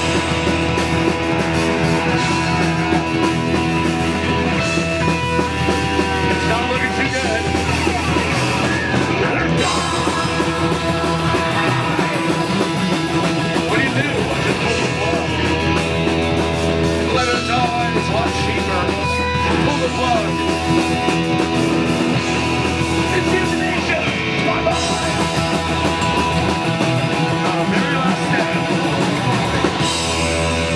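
Live punk rock band playing: electric guitar, electric bass and drum kit, with the singer's vocals over them.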